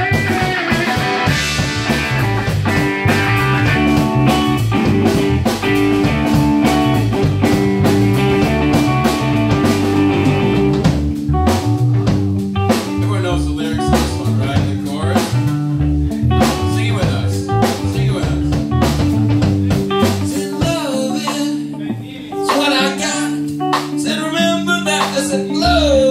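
Live hard rock band playing electric guitars and drum kit through amplifiers. The first half is instrumental with long held guitar notes, and lead vocals come in over the band in the second half.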